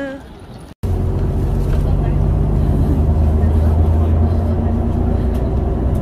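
Steady low drone of a tour bus's engine and road noise heard from inside the cabin while driving, starting abruptly after a brief gap about a second in.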